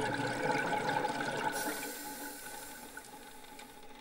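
A steady rush of water, likely underwater ambience, fading gradually to faint over the few seconds.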